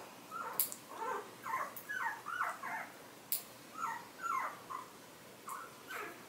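Newborn puppy squeaking in about a dozen short, high cries, in two runs with a pause between, while its toenails are clipped. A few sharp clicks of the nail clippers come in between.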